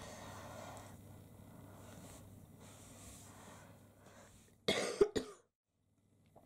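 A person coughing, two quick strokes close together near the end, over faint room tone; the sound then cuts off abruptly.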